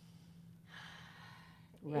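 A person's audible breath, about a second long, in a pause in conversation, followed by a woman saying "Right" near the end.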